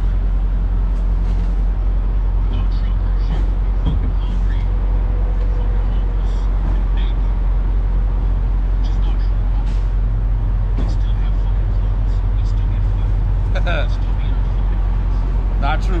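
Steady low rumble of idling vehicle engines, with faint, indistinct voices now and then.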